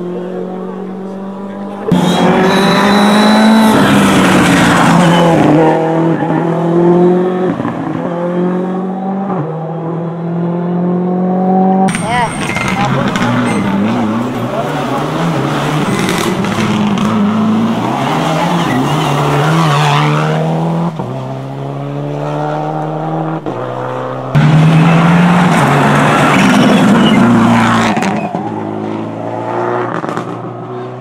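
Rally cars driven flat out on a tarmac stage, one after another: each engine revs up, drops in pitch at every gearshift and climbs again as the car accelerates past. The sound changes abruptly a few times as one car gives way to the next, loudest about two seconds in and again near the end.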